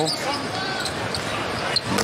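Basketball being dribbled on the hardwood court over a steady arena crowd murmur, with a sharp knock near the end.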